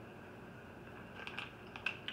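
Faint crinkling of a plastic bag of cheese curds being handled, with a few light clicks about a second and a half in, over quiet room tone.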